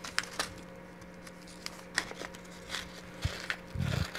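Small plastic bags of craft beads being handled and opened, with light crinkling and beads clicking, heard as a few scattered short clicks and a couple of soft knocks against the wooden table.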